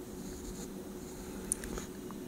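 Graphite pencil scratching across paper as an outline is sketched, close to the microphone, with one short sharp tick about one and a half seconds in.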